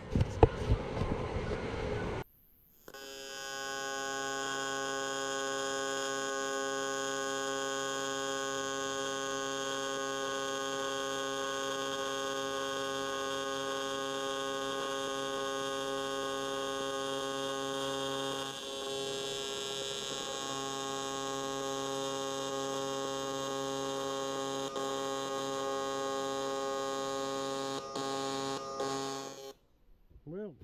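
TIG welding arc buzzing with a steady electrical hum. It strikes about three seconds in, dips briefly about halfway through, and cuts off just before the end.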